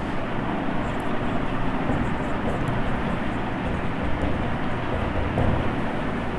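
Steady background noise: an even hiss with a low rumble underneath, no distinct events.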